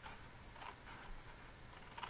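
Small paper snips cutting through card stock, a few faint snips.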